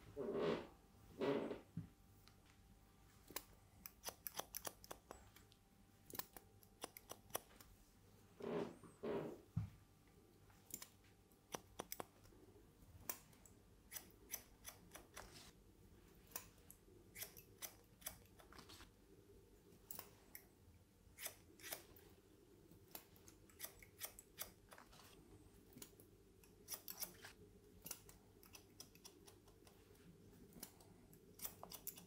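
Barber's scissors snipping through wet, curly hair: faint, sharp cuts in quick, irregular runs. There are a few duller, louder short sounds near the start and about nine seconds in.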